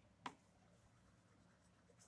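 Faint scratching of a graphite pencil shading on sketchbook paper, with one short click about a quarter of a second in.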